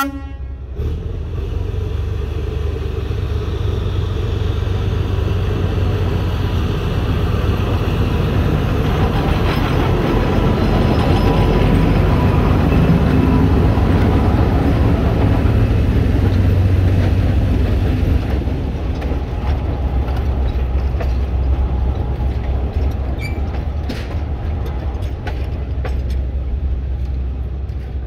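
TU2 narrow-gauge diesel locomotive pulling away with a passenger train, its engine running under load and growing loudest as it passes close by. After it passes, the engine sound eases off and the coaches roll by with their wheels clicking over the rails.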